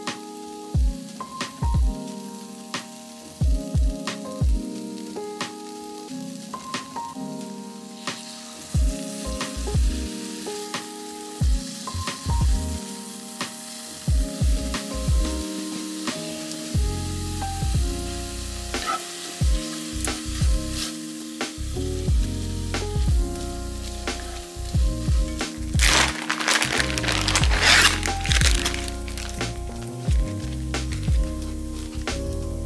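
Background music with a steady beat over tofu scramble sizzling in a cast-iron skillet. Near the end, a plastic bag crinkles loudly for about two seconds as it is opened.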